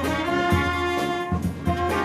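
A brass band (fanfare) playing a tune, held brass notes changing pitch over a steady drumbeat.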